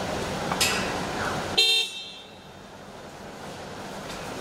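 A short vehicle horn honk about a second and a half in, over steady street background noise.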